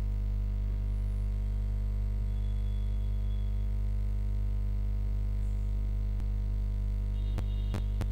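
A steady low electrical hum with no change in pitch or level, with a couple of short clicks near the end.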